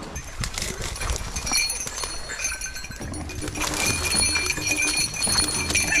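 Rustling and crackling of dry grass stems and brush as a person pushes and scrambles up through thick undergrowth, in irregular crackles.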